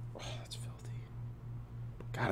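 A low, steady hum, with a brief soft hissy noise about a quarter of a second in that lasts about half a second.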